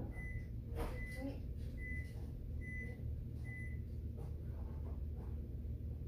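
An electronic appliance beeper sounding five short, high beeps, evenly spaced a little under a second apart, with a few faint knocks.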